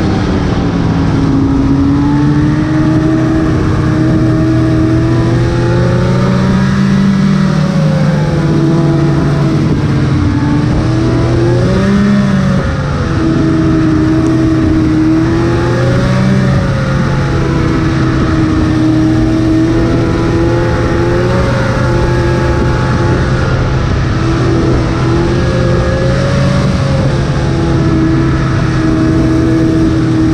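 Snowmobile engine running steadily while riding along a groomed trail, heard from aboard the sled; its pitch rises and falls gently every few seconds with the throttle.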